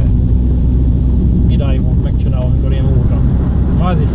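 Steady engine and road hum heard from inside the cabin of a car driving along.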